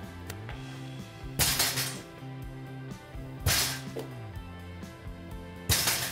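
A medicine ball thrown into a spring-framed rebounder trampoline three times, about two seconds apart, each hit a short noisy smack that rings out for about half a second, over steady background music.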